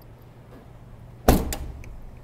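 The rear liftgate of a 2014 Jeep Patriot is shut: one heavy thud a little past halfway through, followed straight away by a quick second knock.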